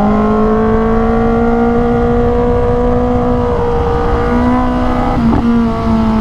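Kawasaki ZX-10R's inline-four engine running at steady high revs under way, the pitch climbing gently, dipping briefly in the middle and easing off near the end, over wind rushing on the helmet microphone.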